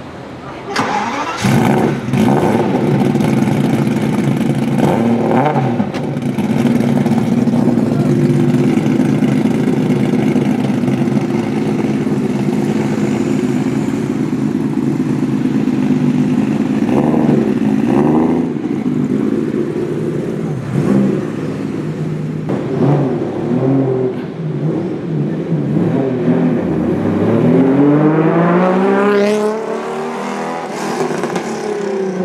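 Ferrari F50's V12 engine starting about a second in, then idling with a few short throttle blips. Near the end it revs hard in a long rising sweep as the car accelerates away.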